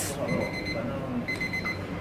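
Digital lab countdown timer sounding its alarm in groups of rapid, high-pitched pips, two groups about a second apart. It is the timer signalling the end of the three-minute incubation of the rapid-test strips.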